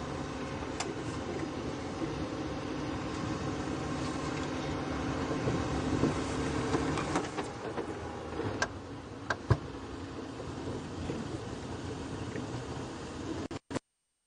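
Engine of an open safari game-drive vehicle running as it drives along a bumpy dirt track, with a few sharp knocks and rattles from the vehicle about eight to ten seconds in. The sound cuts off abruptly near the end.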